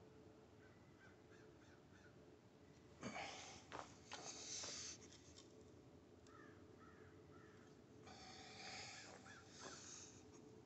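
Near silence outdoors with a faint steady hum. Two brief bursts of handling noise come around three and eight seconds in, as the metal sprockets are shifted by hand. Faint short bird calls sound about a second in and again near seven seconds.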